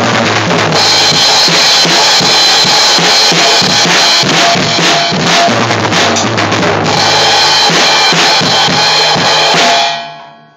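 Drum kit played without a break: bass drum, snare and cymbals struck in a dense beat with the cymbals ringing, stopping right at the end.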